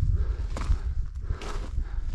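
Footsteps crunching on loose scree and gravel, two steps about a second apart at a walking pace, over a steady low rumble.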